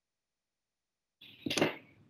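Dead silence for just over a second, then a short, breathy intake of breath near the end, just before the lecturer speaks again.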